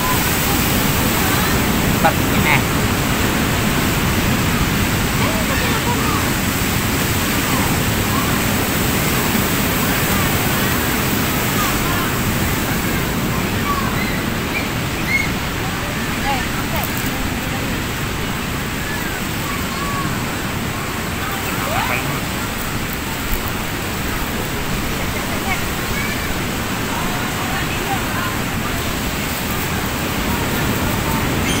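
Steady rushing noise of ocean surf at the beach, with indistinct voices talking in the background.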